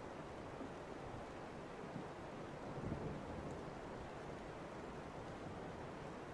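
Heavy rain from a thunderstorm ambience recording, falling as a steady, even hiss.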